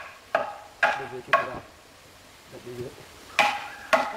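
Hammer driving nails into a wooden post and plank: three sharp, ringing blows about half a second apart, a pause, then two more blows near the end.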